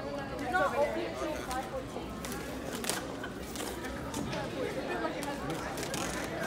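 Indistinct chatter from a group of people gathered close together, with scattered light clicks and rustles as a large cardboard box is worked open.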